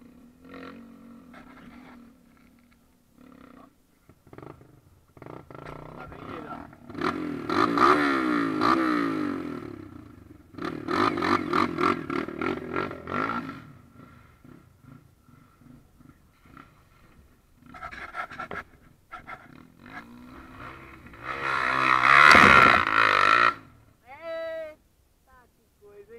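Dirt bike engine revving hard under load on a steep dirt climb, in three loud bursts of a few seconds each, its pitch sweeping up and down, with quieter stretches between.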